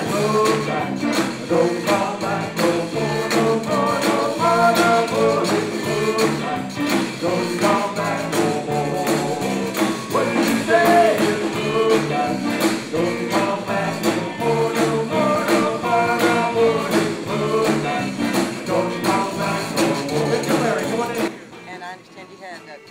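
Live zydeco band playing with a male singer, over a steady, even beat. The music cuts off suddenly about a second before the end.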